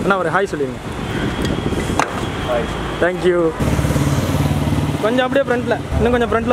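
Voices talking over steady street traffic noise, with one sharp click about two seconds in. A little past halfway the sound changes suddenly to a steady low motor hum for over a second before the talking resumes.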